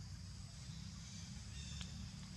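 Forest ambience: a steady high drone of insects over a low rumble, with one short click and a brief high chirp near the end.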